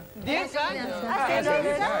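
Only speech: several voices talking over one another in lively chatter, women's voices among them.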